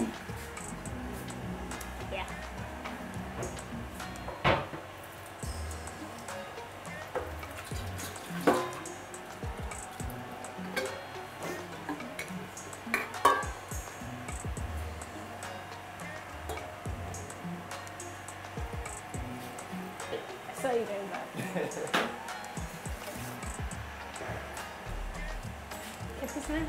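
Background music over kitchen sounds: a few sharp clinks of a metal kettle and pots being handled, with a pot cooking on a gas stove.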